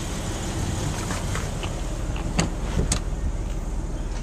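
Steady low rumble of a 2010 Jeep Wrangler's 3.8-litre V6 idling, heard from inside the cabin, with a few light knocks from the handheld camera near the middle.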